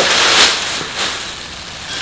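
Crinkling and rustling of thin white wrapping being pulled off a ceramic vase, loudest at the start and fading away.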